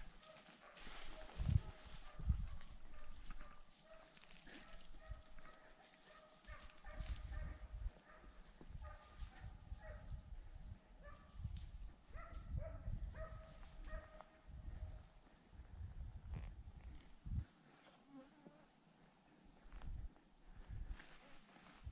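A dog barking repeatedly in the distance, short calls at a steady pitch, with bursts of low rumble on the microphone.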